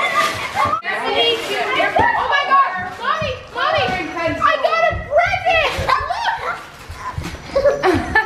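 Several children's excited, high-pitched voices shrieking and talking over each other, with no clear words.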